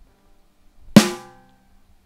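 A single drum hit from the virtual rock drum kit of the n-Track Studio Android app, played by hand in manual mode: one sharp strike about a second in, with a short ringing decay.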